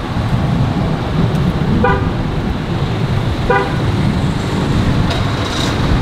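A car's engine running with a steady low rumble, and two short car-horn beeps, one about two seconds in and one about three and a half seconds in.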